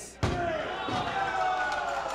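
A wrestler's body slamming onto the ring mat from a German suplex, a single sharp impact just after the start, followed by a held, slowly falling rumble of voices from the crowd.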